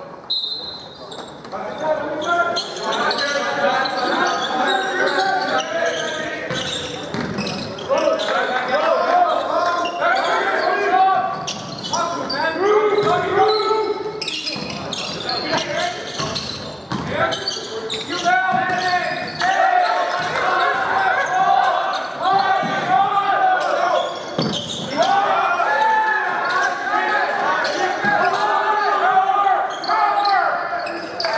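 Basketball game on a hardwood court in a gym: a basketball bouncing repeatedly, with players' and spectators' voices throughout, echoing in the large hall.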